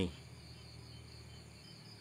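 Night insects chirring in a steady chorus at several high pitches, faint and unbroken.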